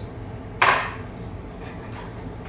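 A cup set down on the countertop: a single short clatter with a faint ring, a little over half a second in.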